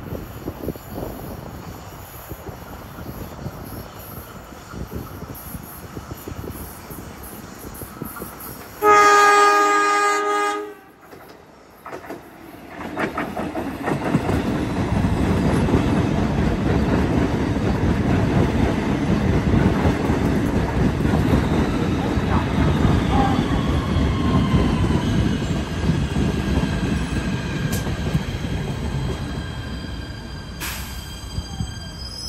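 Kawasaki PA-5 PATH subway train approaching on a curve and sounding its horn in one loud blast of about two seconds. Soon after, it runs close past with a steady rumble of wheels and motors and a faint falling whine.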